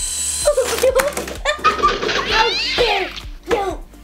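Children's voices laughing and squealing without clear words, with one high wavering cry in the middle, over background music.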